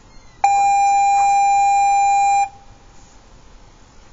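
A single steady electronic beep, about two seconds long, starting about half a second in and cutting off sharply.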